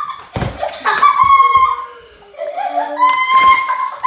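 Excited voices and laughter, including long held vocal sounds, with a sharp thump about half a second in.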